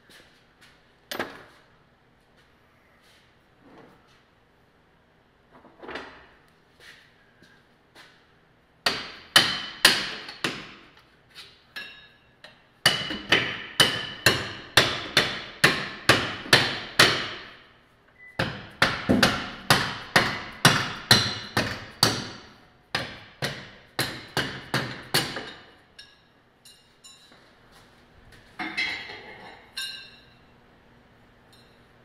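A hammer striking steel on a car's rear suspension, with ringing blows: a few scattered knocks, then from about nine seconds in long runs of quick strikes, four or five a second, broken by a short pause midway.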